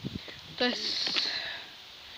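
A man speaking a couple of short words.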